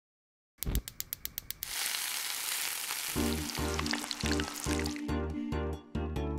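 A gas stove's igniter clicking rapidly, about eight clicks in a second, then a loud hiss with crackling as the burner lights. The hiss fades as music with a pulsing beat comes in.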